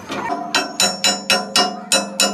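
Hammer striking steel: about six quick, sharp, ringing blows at roughly four a second, starting about half a second in.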